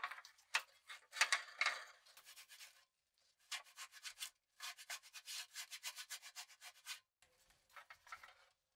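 Rusty, dirt-caked 1960s Structo pressed-steel toy dump truck handled and turned over in gloved hands: dry scraping and rubbing of rusted metal and grit. It comes in bursts, with a short pause about three seconds in, then a quick run of short rubbing strokes.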